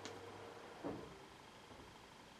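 Quiet room tone, with one faint, short soft sound about a second in.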